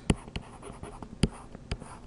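Stylus writing on a tablet: light scratching with a few sharp taps as the pen strokes begin.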